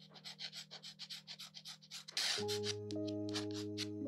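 Glass dip pen scratching across paper in quick short strokes, several a second. About two and a half seconds in, soft background music with held notes comes in beneath the strokes.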